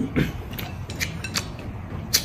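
Close-miked eating: a man chewing a mouthful of noodles, with a handful of short wet clicks and smacks.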